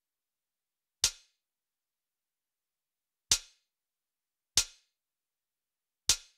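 Computer mouse clicking four times at uneven intervals, short sharp clicks with dead silence between them.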